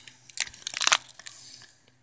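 Handling noise from the recording phone as it is moved: a quick cluster of crackly clicks and rustles in the first second, then a softer rubbing hiss that fades out.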